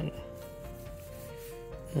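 Hands rubbing against a cloth-dressed action figure as it is turned over. Soft background music plays steadily underneath.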